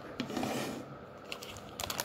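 Light clicks and taps from hands moving a glass dish and a slab of fudge, with several close together near the end, over soft rustling of butter paper.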